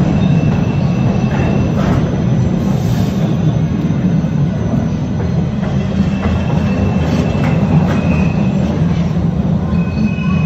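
MBTA Red Line subway train moving along a station platform, a steady loud rumble of the cars on the track. Faint high wheel squeals come and go, once early and again in the second half.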